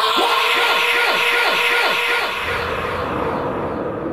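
Synthesized horror soundtrack starting with a sudden loud hit: a held dissonant drone with a rapidly repeating falling-pitch pulse, about four times a second for the first two seconds, then slowly fading.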